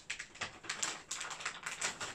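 A quick, irregular run of clicks and rustles, as of something being handled or rummaged through at close range.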